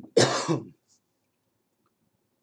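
A man clearing his throat once, a short burst lasting about half a second.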